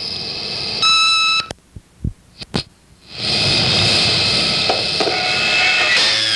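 Answering-machine tape between two messages: one short electronic beep about a second in, a few faint clicks, then a steady line-and-tape hiss from about halfway through as the next message begins recording.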